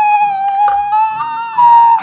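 A man singing one long, high falsetto note, held steady, then stepping slightly higher near the end before breaking off.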